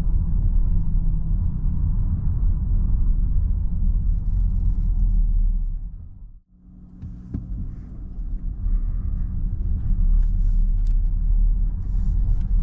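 Low, steady cabin rumble of a Nissan X-Trail e-Power's tyres and drivetrain driving on a city street. It fades away almost to silence about halfway through as the car slows to a near stop, then builds again as it pulls away.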